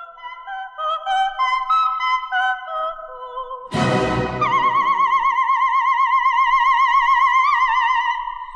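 An operatic soprano singing with accompaniment: a quick run of separate, stepping notes, then, after a sudden loud accompanying chord about four seconds in, a long held high note with a wide, even vibrato.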